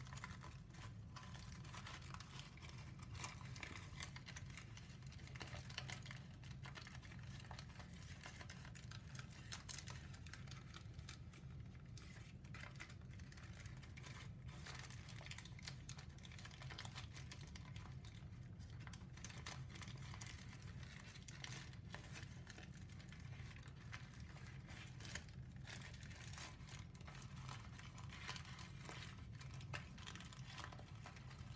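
Paper crinkling and rustling as a heavily pleated origami sheet is worked through its folds by hand: faint, irregular and continuous, over a steady low hum.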